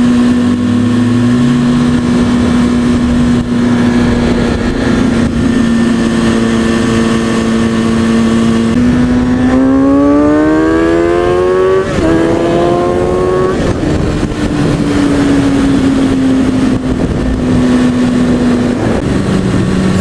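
Inline-four engine of a 2003 Kawasaki ZX-6R 636 motorcycle running steadily at cruising speed, then pulling hard about ten seconds in: two rising runs in pitch, each cut off by a drop as it shifts up, before it settles back to a steady cruise. A rush of wind noise lies under the engine.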